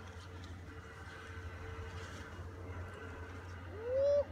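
Steady low outdoor rumble, then near the end a person's rising "woo" cheer as the skier goes off the jump.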